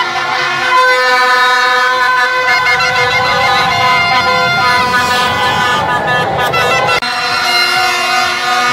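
Many plastic vuvuzela-style horns blown at once in a crowd: several steady, overlapping horn notes hold for seconds at a time. The sound changes abruptly at an edit near the end.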